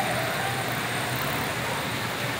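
Steady street noise with the low running rumble of truck engines, and a faint voice near the start.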